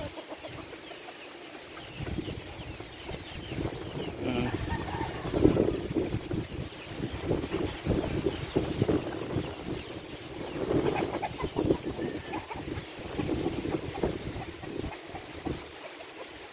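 Chickens clucking, with scattered short calls through the stretch, over low, irregular wind rumble on the microphone.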